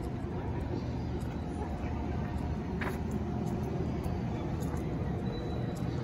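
Outdoor city street ambience: a steady low rumble with faint voices of passers-by, and one sharp click about halfway through.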